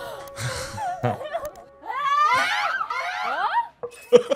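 A group of women gasping and shrieking in surprise, with some laughter, over a sustained music note. The shrieks are loudest in the second half, after the note ends.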